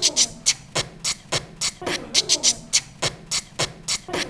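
A woman beatboxing: a steady beat of sharp percussive mouth sounds, about four a second, with brief hummed notes between some of them.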